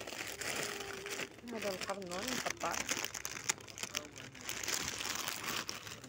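Plastic bags of packaged vegetables crinkling as they are handled and shifted. A person's voice is heard briefly about two seconds in.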